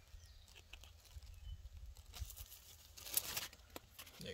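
Faint rustling of squash leaves being handled by hand, with a louder crinkling rustle about three seconds in.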